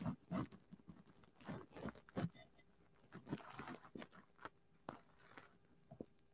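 Faint, scattered light clicks and rustles from handling a plastic embroidery frame with a swimsuit fabric clipped into it.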